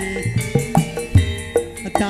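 Live Javanese gamelan music: sharp hand-drum strokes from the kendang over the steady ringing of bronze metallophones and gongs.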